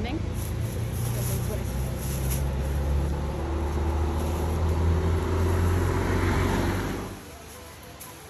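A motor vehicle's engine running with a steady low hum. It grows louder about six seconds in, then cuts off suddenly about a second before the end.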